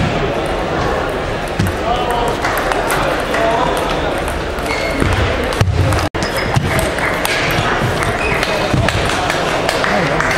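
Table tennis balls ticking on bats and tables across a busy hall of many tables, over a constant murmur of voices. The sound cuts out for an instant about six seconds in.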